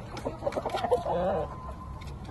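Game chickens clucking in a pen: a quick run of short, wavering clucks starting about half a second in and lasting about a second.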